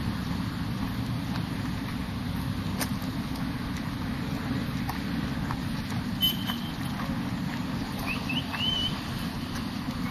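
Outdoor background noise: a steady low rumble. A short high whistle comes about six seconds in, and a few quick rising chirps follow near the end.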